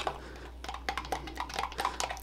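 A stirring rod tapping and scraping against the sides of a plastic beaker as thickened hand-sanitizer gel is stirred by hand: quick, irregular light clicks.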